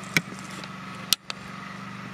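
A steady low hum, broken by three sharp clicks: one near the start and two close together about a second in, with a brief cut-out of sound just after the middle one.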